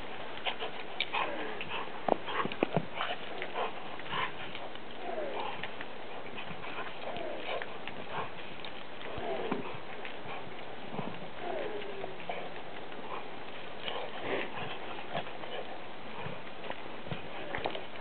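Lab-shepherd mix dog playing with a rubber ball in snow: irregular crunches and knocks from its paws and the ball being mouthed and pushed, with a few short gliding whines in the middle.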